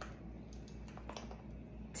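Faint light clicks and scrapes of a metal measuring spoon against a small spice jar as a teaspoon of spice is scooped out, over a low steady room hum.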